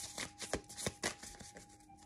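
Tarot cards being shuffled and handled by hand: a run of quick, soft card flicks that thin out toward the end.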